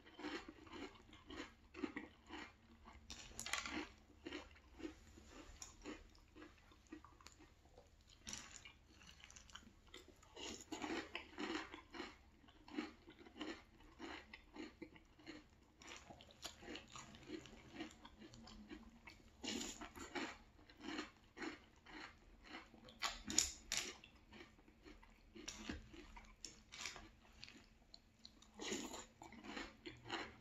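Soft chewing and crunching of milk-soaked Very Berry Cheerios, a steady run of short chewing strokes with louder crunches every few seconds.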